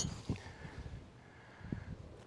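Srixon ZX5 Mk II driver striking a golf ball off the tee: one sharp crack right at the start that rings away quickly, followed by faint outdoor background.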